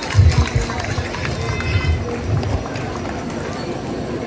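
Outdoor crowd chatter and background din. A few irregular low thumps come in the first half, with no steady beat.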